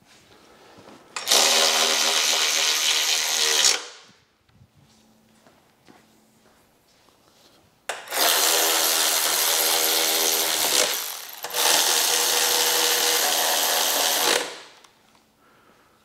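Cordless electric ratchet running in three steady runs of a few seconds each, the first about a second in and two more close together from about eight seconds in, driving the gas tank mounting bolts down tight.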